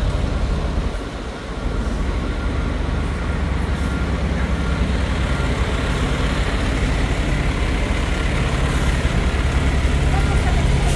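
Diesel engine of a parked Pierce aerial ladder fire truck running steadily at idle, a low, even drone.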